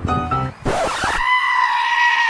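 Piano music stops about half a second in. A short burst of hiss follows, then a loud, high-pitched scream held on one pitch for about a second and a half.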